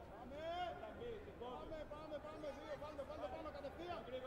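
Several people's voices calling out and talking over one another, with no clear words.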